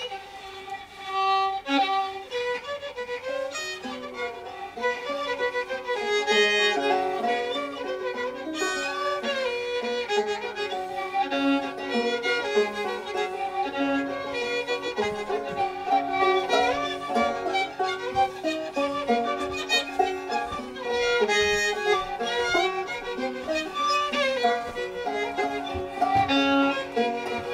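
Fiddle starting and playing a lively old-time tune, with a banjo picking along as accompaniment.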